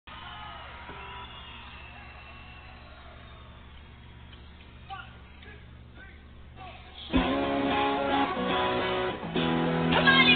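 Live rock band starting the song: a low steady hum for the first seven seconds, then the band comes in loudly all at once, electric guitars strumming.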